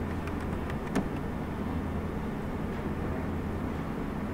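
Steady low hum and hiss of room background noise, with a few light clicks in the first second, the sharpest about a second in.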